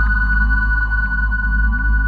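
Ambient electronic music from an Elektron Analog Four analog synthesizer played from a keyboard controller: a deep steady bass drone under held high tones, with short rising pitch sweeps repeating in the lower register.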